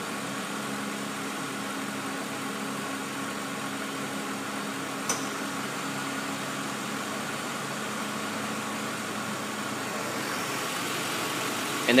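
A 2004 Mercury Grand Marquis's 4.6-litre V8 idles steadily, fully warmed up, with the A/C system running while it is charged. A single short click comes about five seconds in.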